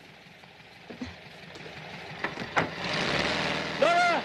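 Car engine running and pulling away, with engine and road noise swelling about two and a half seconds in, and a short arching pitched sound near the end.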